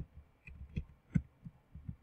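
Computer keyboard typing: about seven irregular keystrokes in quick succession, each a dull low thud with a light click, as a word is typed and corrected.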